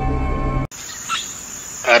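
A held background-music chord that cuts off abruptly under a second in, then a quieter, steady high-pitched insect chorus from a rural ambience track.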